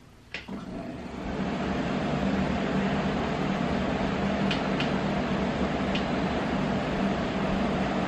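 Room air-conditioning unit switched on: a click, then its fan spins up over about a second and settles into a steady rush with a low hum. A few faint clicks come midway.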